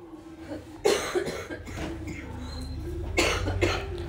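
A person coughing twice, once about a second in and again a little after three seconds, over a low steady background rumble.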